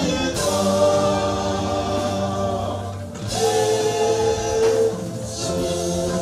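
Gospel music: voices sing long held notes together over a steady bass accompaniment, with a short break between phrases about three seconds in.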